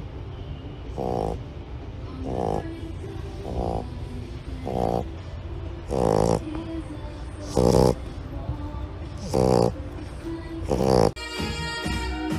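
Shar-Pei puppy snoring in its sleep: a rough, rattling snore about every second and a half, the later snores louder.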